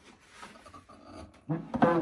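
Steel arms and friction joints of a Kumewa Typ B articulated machine lamp rubbing and scraping as the lamp is swung over, then a short pitched groan near the end.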